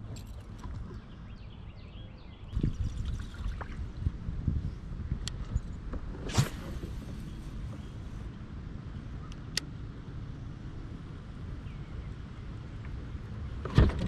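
Steady low rumble of wind and water around a kayak, with scattered clicks and knocks of fishing rod and reel being handled. There is a sharp crack about six seconds in, and the loudest knock comes just before the end.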